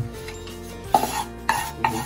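A wooden spatula knocking against a nonstick kadai three times in quick succession, the first about a second in, as stirring in the oiled pan begins.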